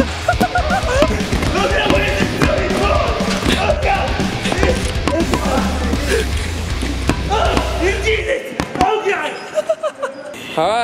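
Background music over dodgeballs thumping as they hit a person and bounce off trampoline mats and padded walls, with laughing and shouting voices. The music cuts off about eight seconds in.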